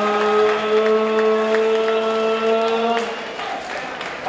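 A ring announcer's amplified voice through a microphone, drawing out the winner's name in one long held call that ends about three seconds in, with scattered applause from the crowd.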